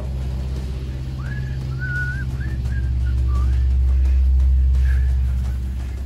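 RV generator running with a steady low hum that swells louder a few seconds in. A faint high melody of a few notes sounds over it.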